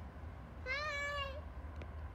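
A young child's high-pitched, drawn-out vocal whine, one wavering call of under a second, heard over a steady low rumble.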